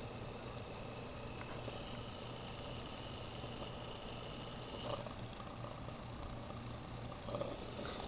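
Small pulse motor and generator running steadily on a supercapacitor, with no battery connected: a faint, even hiss with a low hum underneath.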